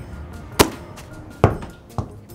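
Two sharp knocks, a little under a second apart, over quiet background music.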